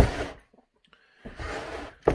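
A stripped-down Echo CS-670 chainsaw body being set back down on a wooden workbench with a clunk right at the start, after being tipped over to dump debris out. A short, soft hiss follows near the end.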